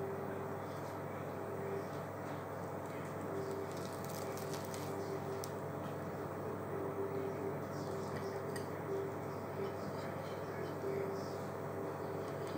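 Quiet kitchen room tone: a steady low hum with a faint tone that comes and goes, and a few soft clicks as a burger bun and skewer are handled on a plate.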